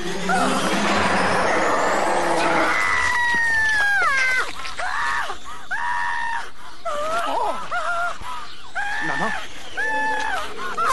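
A woman screaming: after a dense, noisy swell of film score at the start, one long scream falling in pitch about three seconds in, then a run of short, high shrieks roughly one a second.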